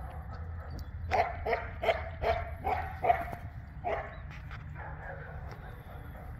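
A dog barking repeatedly, about seven short barks a little over two a second, from about one to four seconds in.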